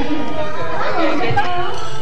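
Overlapping, indistinct chatter of several voices, young children's among them, with no single word standing out.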